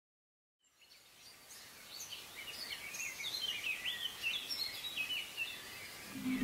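Birds chirping, many short quick calls over a soft outdoor background hiss that fades in from silence just under a second in.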